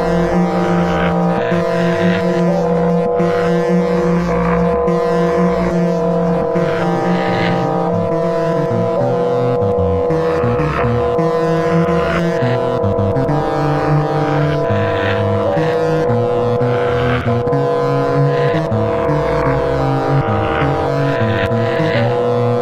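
Live-coded electronic drone music from SuperCollider: a chord of steady sustained tones holds throughout. Noisy swells recur every second or two, with irregular low pulses underneath.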